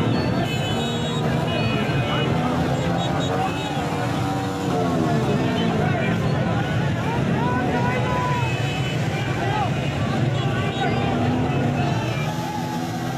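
Loud, dense street-crowd noise: many voices shouting and calling over one another, with vehicle engines running underneath.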